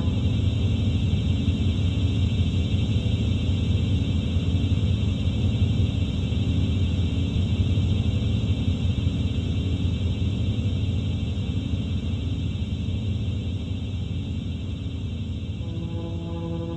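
Electronic music texture with no clear notes: a steady low rumble under a band of high hiss, growing somewhat quieter over the last few seconds.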